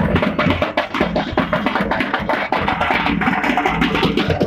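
Loud drum-led procession music: fast, steady drum strokes over a heavy bass.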